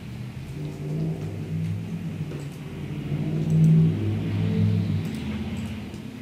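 A low rumble that swells to its loudest about three and a half seconds in, then eases off.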